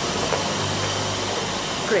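Steady street background noise: a low hum and hiss of road traffic, with a voice starting near the end.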